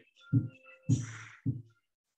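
A man's short, low effortful exhales, three of them about half a second apart, as he does scissor leg kicks.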